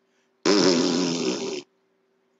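A man blowing a raspberry with his lips, one blast lasting a little over a second, used as a wordless jeer.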